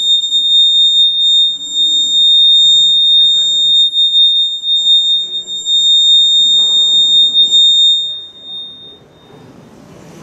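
Public-address microphone feedback: a loud, steady, high-pitched squeal on one pitch that fades out and stops about eight seconds in.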